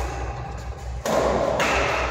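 Sounds of a badminton rally in a large, echoing hall: sudden thuds and taps from racket strikes and players' feet on the court floor, over a steady low rumble.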